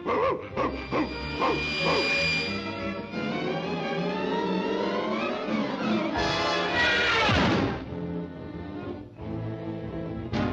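Orchestral cartoon score with quick, changing figures. About six seconds in a loud outburst builds and ends in a steep falling slide as a cartoon greyhound is jolted.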